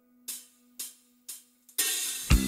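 Live band at a pause in the song: over a faint held low note, the drummer taps the hi-hat three times about half a second apart, then the drum kit and band come in together near the end.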